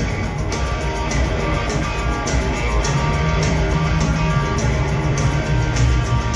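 Live rock band playing loudly through a large PA: electric guitar over bass and a steady drum beat of about two hits a second, with no singing.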